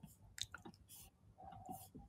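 Near silence in a pause between spoken phrases, broken by a few faint short clicks.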